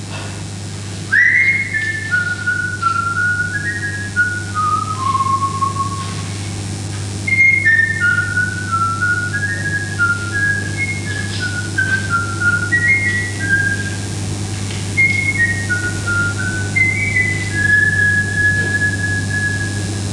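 A person whistling a slow, wandering tune, a single pure line of short stepped notes that rise and fall, starting about a second in and ending on a long held note.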